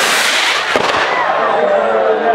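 A firework rocket igniting and shooting off with a loud hissing rush that fades over about a second, with a sharp crack partway through. A crowd shouts and talks around it.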